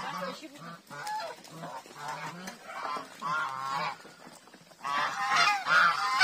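Domestic geese honking repeatedly in a mixed poultry flock, a run of short nasal calls that grows louder near the end.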